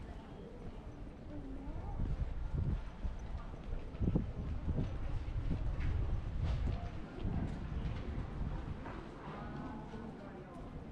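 Footsteps on stone-tiled paving, a short knock roughly once a second, over a low rumble, with passers-by talking faintly.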